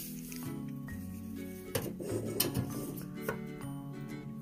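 Background music with sustained notes and a slow-moving bass line, with a few light clinks and knocks as a metal drawknife is handled and set down on a wooden table.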